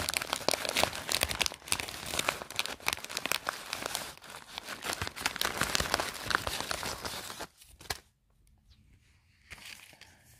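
Thin clear plastic crinkling and crackling as an item is pulled out of a pocket letter's plastic pocket sleeve, handled continuously, then stopping about seven and a half seconds in.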